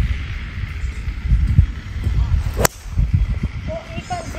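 A 4-hybrid golf club striking the ball off the tee: one sharp click about two and a half seconds in. The strike was a mishit, caught off the sweet spot. A steady low rumble runs underneath.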